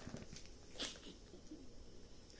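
Quiet pause with faint room tone and one brief, faint breath through the nose about a second in.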